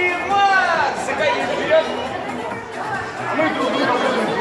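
Indistinct chatter of several voices, some of them high children's voices, with music underneath.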